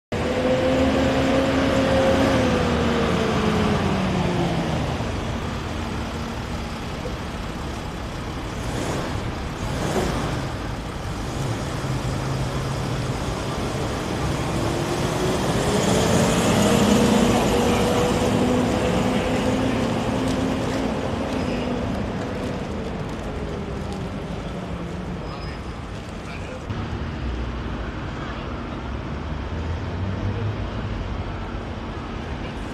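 Motor vehicles driving past on a city street: engine notes falling in pitch as they pull away, one passing close about ten seconds in, and another rising, holding and falling again over the second half.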